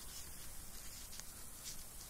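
Faint handling noise: light rubbing with a few soft ticks as painted false nail tips are picked up in a plastic-gloved hand.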